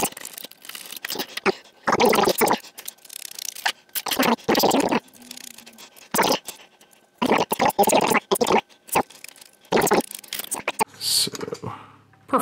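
A screwdriver working screws out of a printer's carriage assembly, a metal bracket with plastic parts and a small motor, as it is handled: several short bursts of scraping and rattling.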